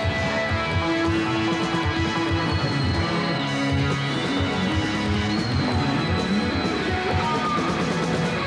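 Live rock band playing: an electric guitar holding long sustained lead notes over a drum kit.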